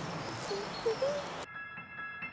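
Woodland ambience with a bird's short, low calls. About one and a half seconds in it cuts off suddenly and is replaced by music of held, chiming bell-like notes.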